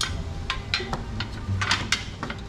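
Metal headlight trim ring and bracket clicking and clinking as they are handled and worked apart: a series of short, sharp clicks, a few close together near the end, over a low steady hum.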